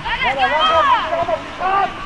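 High-pitched shouting voices with no clear words: one long call, then a short one near the end.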